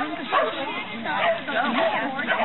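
A dog barking over people talking in the background.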